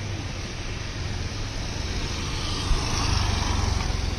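Road traffic noise: a steady low rumble as a vehicle passes, swelling in the second half, with one brief knock just before the loudest part.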